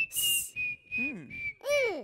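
Cartoon sound effects: a thin high whistle tone held steady with a slight downward drift, with a short hiss at the start and two swooping tones that slide downward, the second rising briefly before falling.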